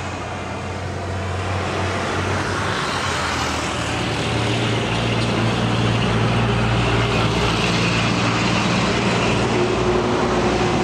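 Heavy road traffic: a large vehicle's engine drones low and steady under road noise and grows louder through the second half, as a truck passes close by.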